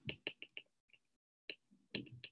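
Stylus tip tapping on a tablet's glass screen during handwriting: a quick run of faint ticks in the first half second, then a few more spaced out over the next second and a half.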